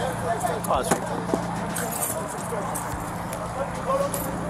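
Indistinct voices talking in the background, mostly in the first second, over a steady low hum of road traffic, with a few short clicks and rattles close to the microphone.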